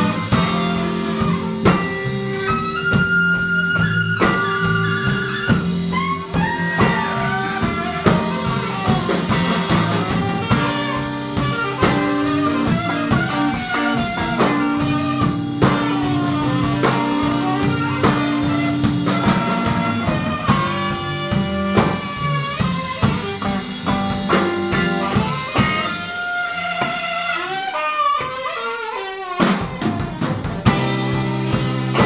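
A live blues band plays: electric guitar, electric bass and drum kit, with an alto saxophone. Sustained and bending lead notes ride over a steady bass line and drum beat, and a fast falling run of notes comes near the end.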